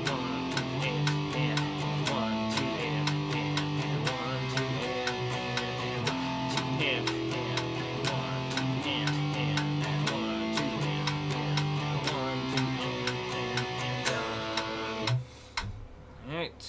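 Electric guitar strummed in a steady, even rhythm on a sequence of power chords, played at double time. The playing stops about a second before the end.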